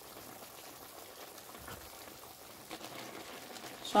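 Pot of potatoes and beef boiling: a faint, steady bubbling hiss, with a few soft clicks near the end.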